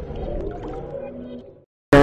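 Tail of a channel logo ident's electronic background music: sustained synth tones fading out about one and a half seconds in, a brief silence, then a woman's speech starting right at the end.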